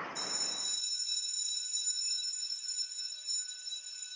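A steady high-pitched test-pattern tone: several pure tones held together without a break. A hiss of static fades out under a second in.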